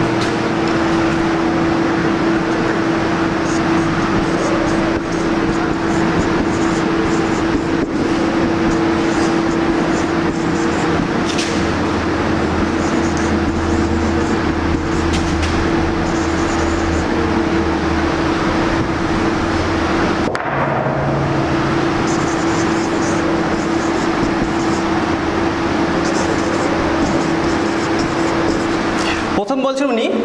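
A loud, steady noisy drone with a constant hum through it, cut off for a moment about two-thirds of the way in before it resumes.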